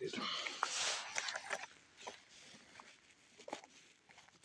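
A nickel-plated Smith & Wesson Model 59 pistol being drawn from a leather holster: about a second and a half of leather rubbing and scraping with a few light clicks, then quieter handling.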